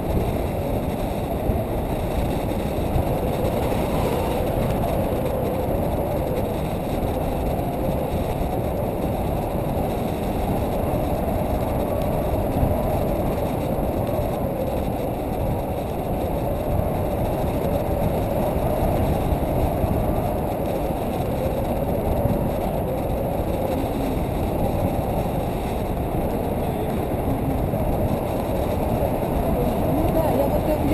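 Steady rush of airflow buffeting the camera's microphone during a paraglider flight, a constant low noise with no pauses.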